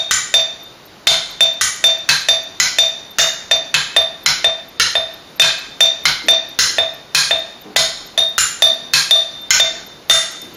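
Glass jam jars resting on bubble wrap, struck with sticks in a steady, evenly spaced beat of rapid strikes, each with a short glassy ring. It is one hand's part of a polyrhythm played on its own, going around a circle of jars, with the strikes starting about a second in.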